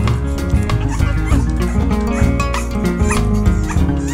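A newborn American Bully puppy whimpering and yelping in several short high squeals, over background music.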